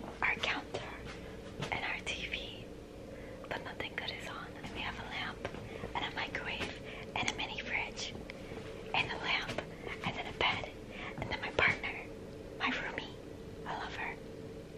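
Whispered talk in short bursts, over a faint steady hum.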